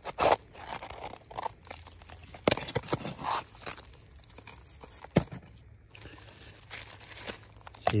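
Gloved fingers picking and scraping at crumbly red clay and rock: irregular crunches, scrapes and clicks, busier in the first few seconds and sparser after, with one sharp click about five seconds in.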